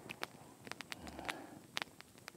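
Wood campfire crackling quietly, with irregular sharp snaps and pops.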